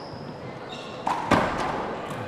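A wallball handball smacks once, sharply, about a second and a half in, as play begins with a serve, and the smack rings on briefly in the large hall. Just before it, a short faint squeak like a shoe on the wooden court.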